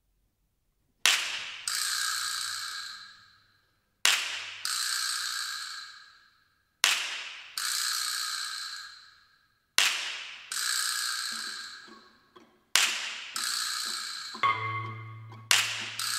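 Orchestral percussion strikes, six in all, about three seconds apart. Each is a sharp crack, then a second hit about half a second later, and a ringing, hissing decay that fades over two seconds. Near the end a steady low tone and other held notes from the orchestra come in underneath.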